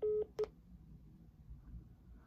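Phone beeping as the call drops: one steady beep of about a quarter second, then a short clipped one just after.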